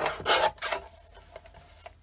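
Guillotine paper trimmer's blade arm brought down through a sheet of paper: two short rasping strokes in the first second, the first the louder.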